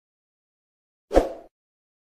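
One short pop about a second into otherwise dead silence, a sound effect of the on-screen subscribe-button animation.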